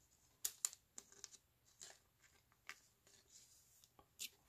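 Faint clicks and rustles of baseball cards being handled by hand, with two sharper clicks about half a second in and scattered softer ones after.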